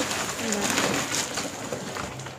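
Plastic bags and a woven plastic sack rustling and crinkling as they are handled and opened, a steady crackle with many small clicks.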